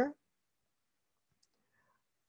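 The end of a man's spoken word, then near silence with a single faint click about one and a half seconds in.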